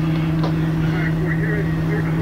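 Diesel engine of a fire truck running steadily at the fire scene, a constant low drone with faint voices behind it.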